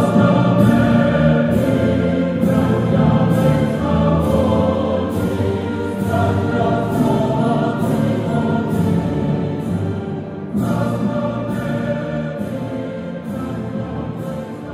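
Music with choir-like voices over a steady pulse that comes a little under once a second, slowly getting quieter toward the end.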